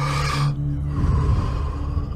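A deep, quick breath in through the mouth, then a slower breath out, paced for a Wim Hof breathing round, over a steady ambient music drone.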